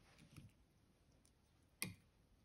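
Near silence, with one sharp, short click near the end.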